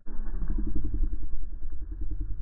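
An engine running, a loud low rumble with a rapid even pulse that starts abruptly at the outset.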